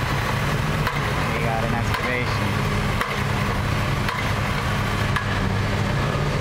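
Heavy-equipment diesel engine running steadily at a boring and drilling site, a constant low drone, with a few faint knocks.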